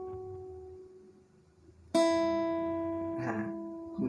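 Acoustic guitar playing single melody notes. The note left by the slide to the seventh fret of the B string rings and fades almost to silence. About two seconds in, a new note, a little lower, is plucked at the fifth fret of the B string and rings out, slowly dying away.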